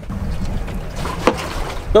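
Low, steady wind rumble buffeting the microphone aboard a boat on open water, with a couple of short knocks in the second half.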